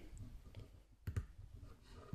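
Logitech T630 Ultrathin Touch Mouse clicking: two quick, faint clicks close together about a second in, with a few lighter ticks around them.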